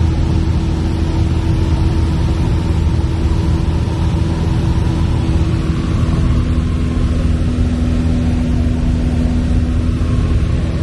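Piper PA-28-160 Cherokee's four-cylinder Lycoming O-320 engine and propeller droning steadily in cruise flight, heard from inside the cockpit. A second, slightly lower hum joins about six seconds in.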